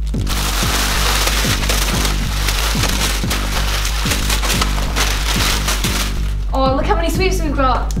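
Plastic sweet and crisp packets crinkling and rustling as they are grabbed up by hand, over electronic background music with a steady beat. The crinkling stops about six and a half seconds in, and a voice comes in near the end.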